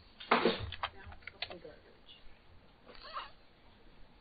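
A few computer keyboard keystrokes clicking about a second in, as a running ping is stopped with Ctrl-C and started again. Just before them there is a short breathy vocal noise, the loudest sound here, and a brief murmur near three seconds.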